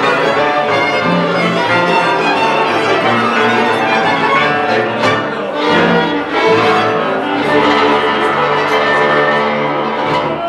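A Moravian folk cimbalom band playing a tune: violins leading over a struck cimbalom, double bass and cello, with flute and clarinet.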